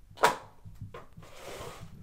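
Detachable magnetic keyboard of a Lenovo Chromebook Duet snapping onto the tablet's bottom edge: one sharp snap about a quarter second in, then a fainter click and a soft rustle of handling.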